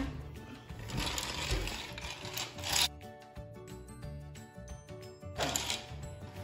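Ricky Zoom Lights & Sounds Ricky toy motorbike playing a short electronic tune through its small speaker, starting about three seconds in and lasting a couple of seconds. Before it, soft rubbing and scuffing on the wood floor.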